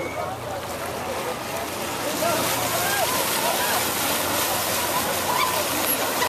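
Water rushing and splashing, the hiss thickening from about two seconds in, with people's voices calling out over it.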